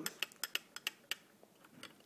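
Light clicks and taps from a plastic HO-scale model railroad car being turned over and handled in the fingers, several in the first second and fewer after.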